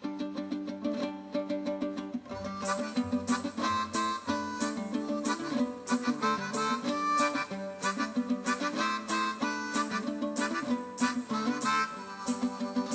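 Instrumental band intro: a harmonica plays held notes over strummed plucked string instruments, with the strumming coming in about two seconds in and keeping a steady rhythm.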